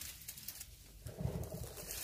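A short, low-pitched bird call, heard once about a second in.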